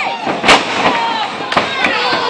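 A loud slam of a body hitting the wrestling ring mat about half a second in, with a couple of lighter thuds after it. Shouting from the crowd and wrestlers runs throughout.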